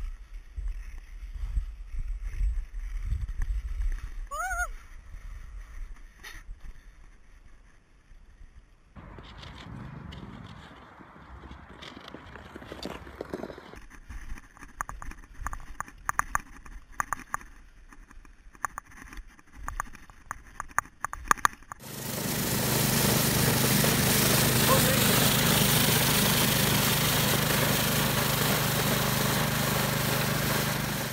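Ice skating on natural ice with wind on the microphone, then a run of short clicks and scrapes from skate blades. About two-thirds of the way in, a small petrol engine on a walk-behind power brush sweeper starts loudly with a steady low hum, its rotating brush sweeping snow off the ice.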